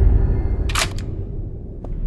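Film sound design: a low, steady rumbling drone with a quick double click a little under a second in and a fainter single click near the end.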